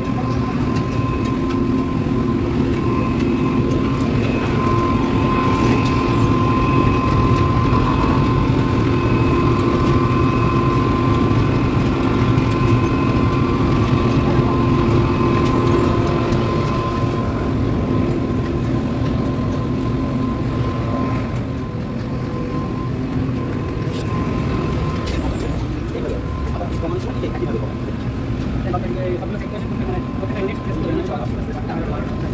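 Asphalt plant machinery running: a steady loud drone with a low rumble and several held whining tones. It eases off a little about halfway through.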